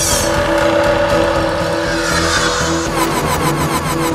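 Dramatic title music overlaid with whooshing transition effects: a sweep falling in pitch at the start, another swoosh about two seconds in, and a rapid run of clicks in the last second as the title appears.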